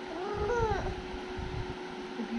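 A single short meow-like call that rises and then falls in pitch, over a steady faint hum.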